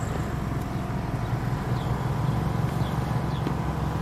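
Steady car cabin noise heard from the back seat: a low, even engine hum with a haze of road and air noise.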